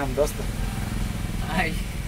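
Steady low hum of an idling engine, with two short snatches of a man's voice over it.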